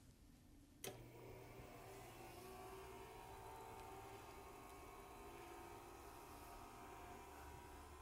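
A switch clicks about a second in, and the Van de Graaff generator's motor starts and runs faintly and steadily, charging the dome.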